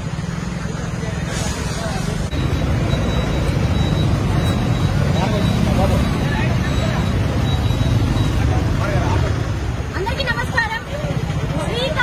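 Street traffic, with a steady low engine rumble running throughout and the chatter of a crowd of people talking over it.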